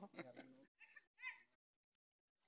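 Faint speech trailing off, then two short high-pitched calls about a second in, then near silence.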